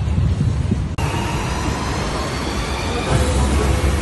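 White water rushing down a river-rapids ride channel, a steady dense roar, with background music under it. The sound breaks off for an instant about a second in, where a new clip starts.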